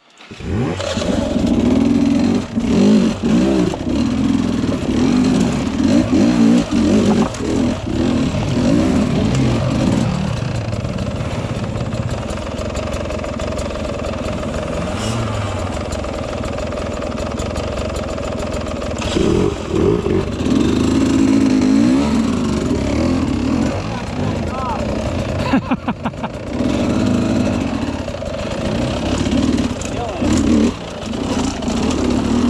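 Dirt bike engine running on a rough, rocky trail climb, its revs rising and falling with the throttle. It holds steadier through the middle and revs up again later, with a brief run of sharp ticks near the end.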